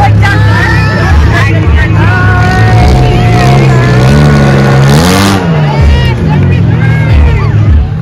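Engines of demolition-derby cars running loudly in a dirt arena and revving, the pitch climbing and falling again around the middle, with a brief burst of noise about five seconds in. A crowd is shouting over them.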